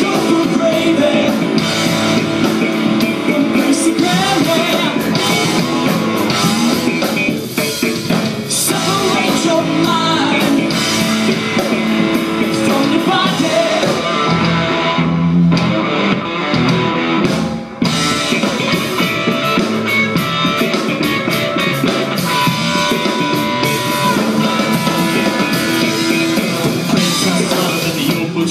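Live band instrumental passage of a funk-rock jam: electric bass and drum kit playing loudly. The sound thins out briefly just past the middle.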